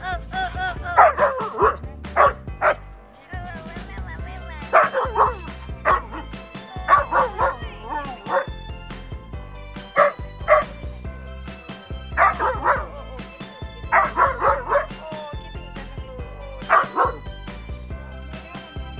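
Siberian husky vocalizing in short, pitch-bending calls that come in clusters every second or two, over a steady music track.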